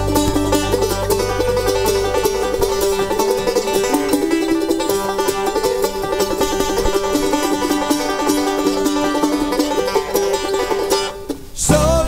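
Bluegrass band playing an instrumental break between verses, a quickly picked banjo to the fore over other string instruments. The low bass part drops out about two seconds in, and the music briefly falls away just before the end.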